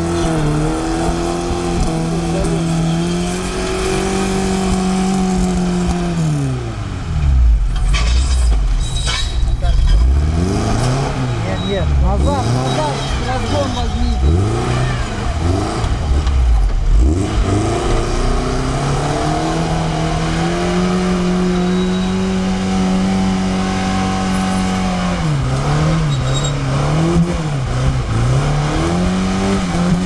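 Lada Niva engine revving hard while driving through water, with water splashing around the wheels. The revs hold high, drop sharply a few seconds in and bounce up and down for about ten seconds, then climb and hold high again, with a few quick dips near the end.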